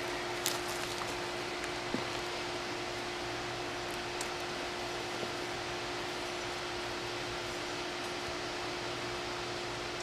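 Steady machine hum: a constant low tone over an even hiss, with a few faint clicks about half a second, two seconds and four seconds in.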